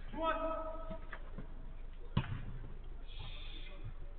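Men's voices calling out across a five-a-side football pitch, with one sharp thud of the ball being struck about two seconds in.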